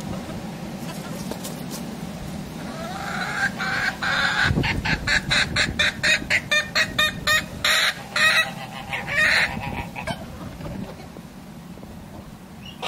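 Transylvanian Naked Neck chickens clucking: a rapid run of short clucks, about four a second, building from about three seconds in and ending with a couple of longer calls about nine seconds in.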